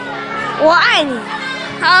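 A boy's high voice, one short rising-and-falling vocal sound about a second in, then speech again near the end, over steady background music.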